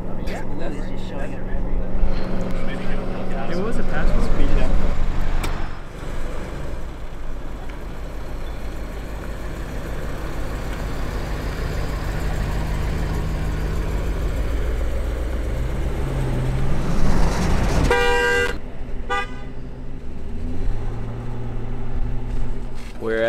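Cars driving along a road, a steady rumble of engine and road noise. Near the end a car horn honks: one loud blast about half a second long, then a shorter, fainter one.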